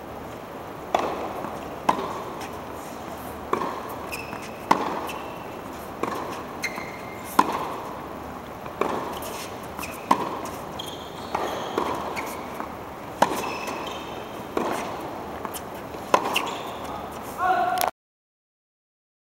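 Tennis balls struck by rackets in a baseline rally in an indoor arena: sharp pops about every second or so, each with a short echo. Brief high squeaks come between some of the hits.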